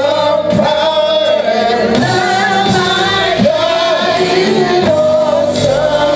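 Gospel praise-and-worship singing: a small group of men and women singing together into microphones, the voices amplified.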